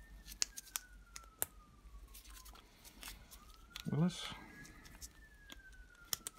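Pliers clipping and twisting at the crush washer on a car's sump plug, a few sharp metal clicks and snips, the sharpest about a second and a half in. A faint siren wails slowly up and down twice in the background.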